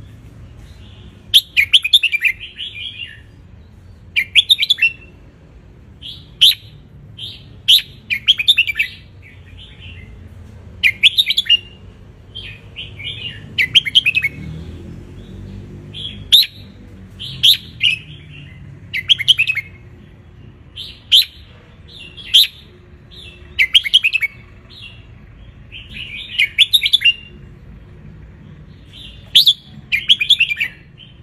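Red-whiskered bulbul singing, repeating short warbled phrases about every second or two.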